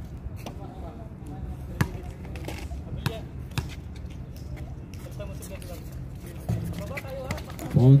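A basketball bouncing a few separate times on a hard court, each a sharp thud, over steady background noise and faint voices. A man's loud shout comes in near the end.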